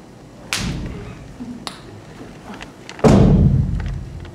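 Heavy thuds: a sudden one about half a second in, a lighter knock a little over a second later, and the loudest about three seconds in, with a ringing tail that dies away over most of a second.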